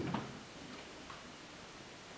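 Quiet room tone with a few faint ticks.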